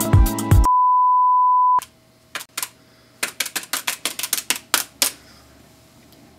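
Music cuts off abruptly, then a single steady electronic beep tone plays for about a second; it is the loudest sound here. After a short gap comes a run of quick irregular clicks of keys being pressed, a few per second, which stop about a second before the end.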